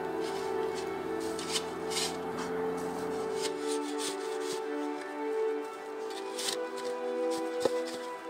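A metal snow shovel scraping and digging into packed snow: several short scrapes, over background music of sustained notes.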